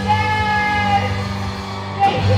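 Female singer performing live through a microphone over band accompaniment, holding a long note in the first second.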